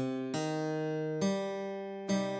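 Computer-rendered guitar from a tab playback playing single melody notes one at a time, a new note about every second, over a held low note.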